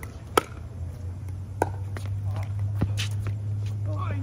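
Pickleball rally: a sharp paddle pop on the plastic ball as the serve is struck about half a second in, then several fainter paddle hits roughly a second apart as the ball is returned. A low steady hum sits underneath from about a second in.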